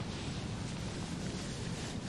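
Steady outdoor background hiss from wind on the course microphone, even and unbroken, with no distinct events.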